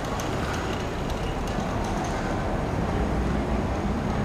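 Steady street ambience: road traffic noise with a continuous low rumble and no distinct events.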